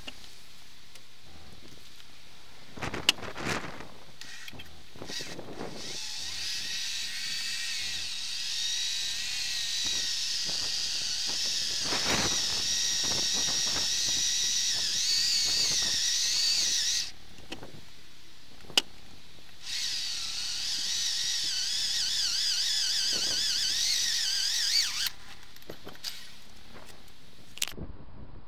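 Power drill boring through a metal seat runner to widen a mounting hole to 8 mm: two runs of high motor whine that wavers under load, the first about ten seconds long and the second about five, with a pause between. A few sharp knocks come before the first run.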